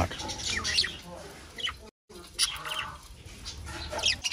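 Budgerigars chirping and chattering in short, scattered calls. The sound cuts out completely for a moment about halfway through.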